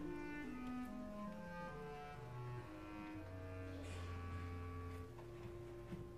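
Opera orchestra playing quietly: a slow line of held notes stepping downward into the low register, settling on a long low note about three seconds in before a higher note takes over near the end.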